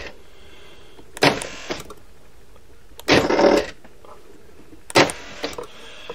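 Cheap generic central-locking solenoids on the four doors of an ambulance camper's habitation box, worked by a remote key fob. They fire three times, about two seconds apart, locking and unlocking. Each time is a loud thunk lasting about half a second.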